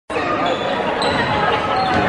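Basketball bouncing on a hardwood gym floor during play, under steady crowd chatter echoing in the gym; it opens just after a brief dropout in the sound.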